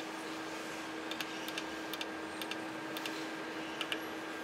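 Light clicks of the push-buttons on an electric melting furnace's digital temperature controller, pressed again and again with irregular gaps, over a faint steady hum.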